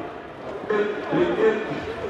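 A man's voice speaking: a tournament announcer calling the next match over a public-address system.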